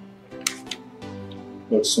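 Soft background film music with sustained tones, with a couple of brief clicks about half a second in; a voice starts speaking just before the end.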